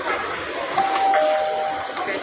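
Electronic two-note chime: a higher steady tone sounds just under a second in, a lower tone joins it a moment later, and both stop near the end. Restaurant room noise runs underneath.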